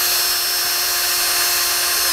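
Milwaukee cordless drill running under no load at full trigger in its low-speed gear, its motor and gearbox giving a steady whine at about 390 RPM.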